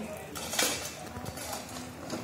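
Metal shovel scraping and scooping gravel and rubble off a road surface into a metal pan, with clinks of metal on stone. The strongest scrape comes about half a second in.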